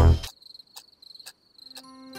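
Loud brass jazz music cuts off just after the start, leaving a quiet night backdrop in which a cricket chirps in short, high, pulsing trills. Near the end a soft low tone comes in as gentle music begins.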